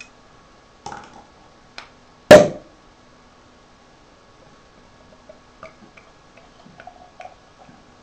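Cork being worked out of a corked beer bottle: a few small creaks and clicks, then one loud pop about two seconds in as the cork comes free. A few soft clicks and taps follow.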